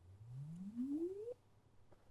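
Faint logarithmic swept sine from the impedance tube's source loudspeaker: a single pure tone rising steadily in pitch from a low hum to a mid tone over about a second and a half, then cutting off sharply. It is the test signal for an absorption-coefficient measurement of the short-circuited loudspeaker absorber at the far end of the tube.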